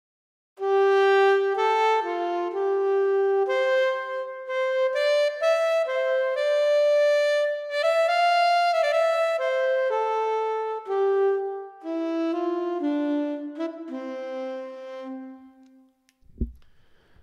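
Audio Modeling SWAM alto saxophone, a physically modelled virtual instrument played from MIDI, playing a slow solo melody line. It starts about half a second in, moves note to note, and settles onto a lower held note near the end.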